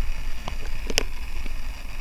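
Steady low rumble of background room noise, with a short click about half a second in and a sharper click about a second in.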